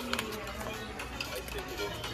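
Retail-store background music with indistinct voices, and a few light clicks near the start.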